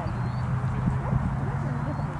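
Open-field ambience of a youth soccer game: far-off shouts and calls from players and spectators over a steady low rumble.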